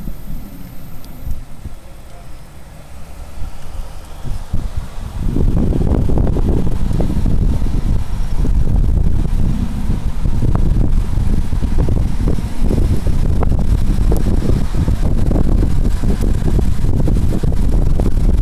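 Wind buffeting the camera's microphone: a loud, gusting low rumble that starts suddenly about five seconds in and carries on. Before it there is quieter, uneven outdoor sound.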